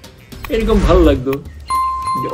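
Notification-bell chime sound effect from a subscribe-button animation: one clear ringing tone that starts near the end and rings on steadily, following a short stretch of a man's speech.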